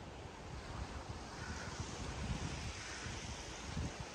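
Steady wash of surf and wind on a beach, with wind buffeting the microphone in a low, fluctuating rumble.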